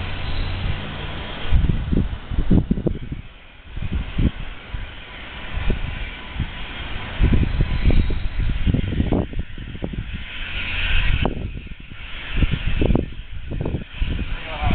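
The M5A1 Stuart tank's engine, a Chevy 366 big-block V8 in place of the stock twin Cadillacs, running out of sight, its rumble swelling and fading as the tank moves around the building. Uneven gusts of wind buffet the microphone over it.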